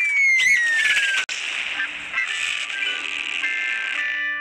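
Cartoon sound effects with light music: a falling whistle over the first second or so, cut off sharply, then a steady high hiss with a few scattered musical notes.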